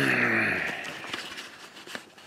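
A man clearing his throat, a rough, falling vocal sound that fades away over the first second, followed by faint rustling as the handheld camera is moved.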